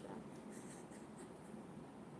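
Quiet room tone with faint, soft rustling.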